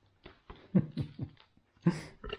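Whippet puppy mouthing and chewing at the camera close to the microphone: a quick, uneven run of sharp knocks and scuffles.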